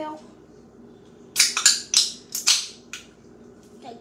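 Handling noise: a quick run of five or six short, sharp, loud noises starting about a second in, then one fainter one.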